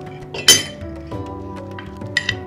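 A metal spoon clinks once, sharply and with a short ring, against a glass bowl about half a second in, over soft background music.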